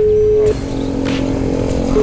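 Telephone ringback tone on an unanswered outgoing call: a steady single-pitch tone that stops about half a second in and sounds again near the end.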